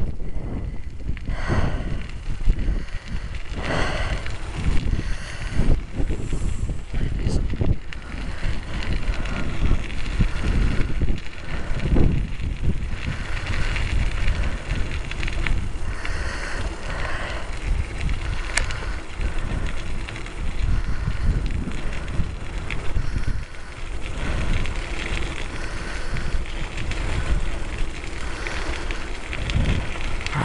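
Bicycle rolling along a trail path, with tyre noise over the surface and wind rushing on the microphone, surging and easing throughout.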